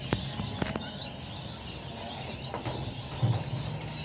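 Handling noise from a phone camera being set down and adjusted: scattered light clicks and knocks, then a heavier thump about three seconds in, over a low steady background hum.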